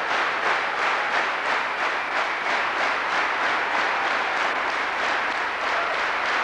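Large indoor audience applauding steadily, a dense wash of many hands clapping at an even level.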